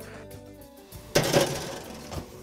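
Background music with steady held notes; a little over a second in, a brief scraping clatter of a metal baking tray being slid onto the grill shelf.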